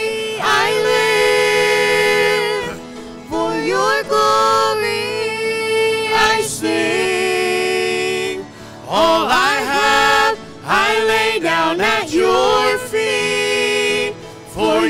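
A mixed group of women's, a boy's and a man's voices singing a worship song in harmony into microphones, in long held notes with short breaks between phrases.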